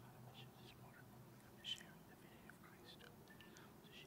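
Faint whispering, barely above room tone: a priest's quiet prayer said under his breath while water is mingled with the wine in the chalice at the offertory.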